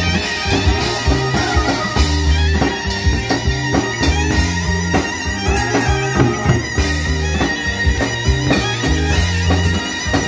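Live band playing an upbeat smooth-jazz instrumental: a wind-instrument lead melody over drum kit, bass line and keyboard, with a steady beat.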